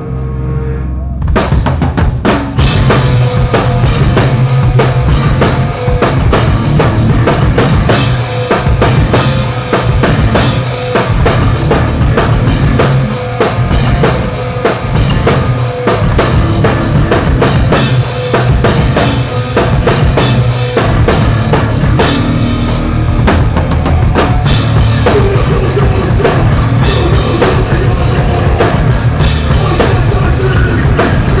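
Live hardcore band playing loud: distorted electric guitars, bass and a drum kit with bass drum and cymbals. A low held note opens, then the full band comes in about a second in, with a short break about three-quarters of the way through before it drives on.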